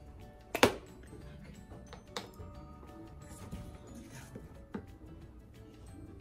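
Background music with steady held tones, and a single sharp plastic click about half a second in as a glue stick's cap is pulled off, followed by a lighter click about two seconds in.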